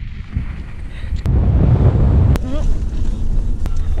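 Wind buffeting the microphone: a low rumble that grows louder about a second in. A brief voice sound comes a little past the middle.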